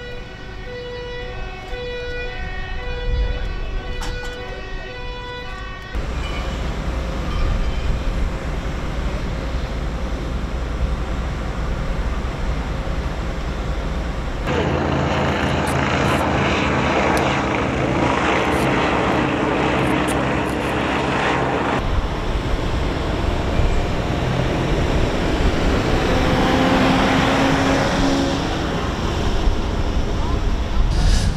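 A two-tone emergency-vehicle siren alternating between a high and a low note for about six seconds. Then comes a steady rumble of engines and equipment, including the steady drone of a fireboat's engine while its water cannon sprays the fire. Near the end there is the noise of a helicopter overhead, with a rising whine.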